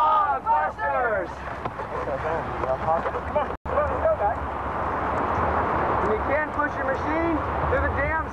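Indistinct voices calling out over wind buffeting the microphone. The calls come at the start and again in the second half, and the sound cuts out for an instant about halfway through.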